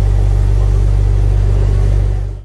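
Speedboat under way: its engine runs with a steady low rumble under a constant rush of wind and water noise.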